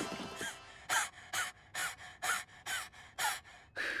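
Cartoon cockroaches gasping in a steady rhythm, about two breaths a second, each with a short squeaky voiced tail: effortful panting as they strain under a heavy load.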